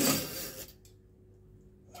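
Coiled-wire drain snake scraping out of a sink's metal plughole: a brief rasping scrape in the first half second, fading to near quiet.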